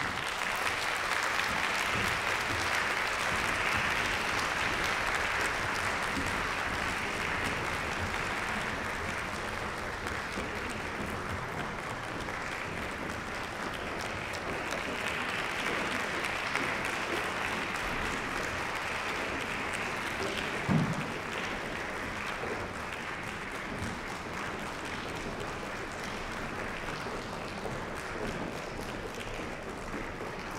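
Concert-hall audience applauding steadily, greeting the choir as it walks onto the stage. The clapping is fullest in the first few seconds and eases slightly, with a single brief thump about two-thirds of the way through.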